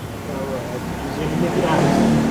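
A motor vehicle's engine, growing louder near the end, under faint voices.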